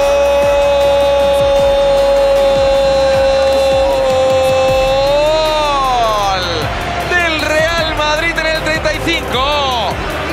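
A Spanish-language football commentator's long held "gooool" shout for a goal, steady in pitch for about five seconds and then falling away, followed by more excited shouting that rises and falls quickly, over background music.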